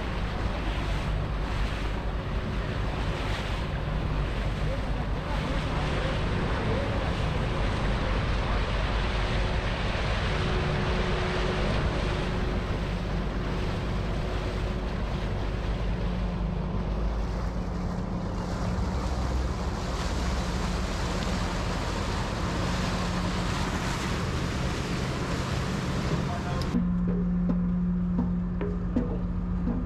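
Wind on the microphone and rushing water from a small boat running alongside a ship's hull, over a steady low engine drone. Near the end the wind and water noise cuts out suddenly, leaving only the steady hum.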